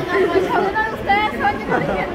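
Speech only: people talking, with chatter from other voices around.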